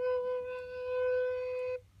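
A wooden end-blown flute holds one long, steady note, then stops cleanly shortly before the end as the player breaks for breath.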